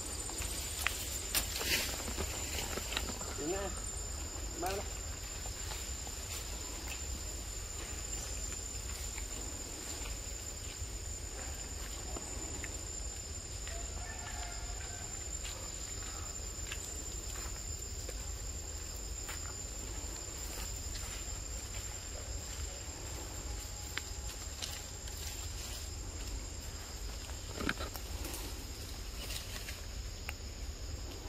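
Forest ambience: a steady, high-pitched insect drone holds throughout over a low rumble, with a few sharp clicks in the first two seconds.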